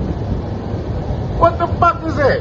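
Steady low rumble of vehicle noise, with a brief voice near the end.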